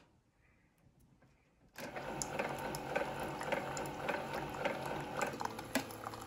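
Keurig 2.0 single-serve coffee brewer brewing, a steady mechanical whir with small ticks as coffee streams into a mug. It starts about two seconds in, after a brief silence.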